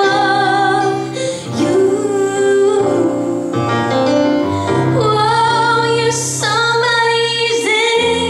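A woman singing into a handheld microphone in long held notes with a slight waver, over sustained instrumental accompaniment.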